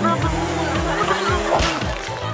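Background music with held and sliding bass notes, with a person's voice over it.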